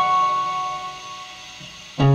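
Acoustic guitar: a single high note is plucked and left to ring, fading away over about a second and a half in a pause in the playing.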